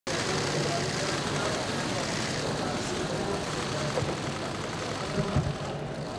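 Steady outdoor street noise: an even hiss with faint distant voices, and a few low thumps just after five seconds in.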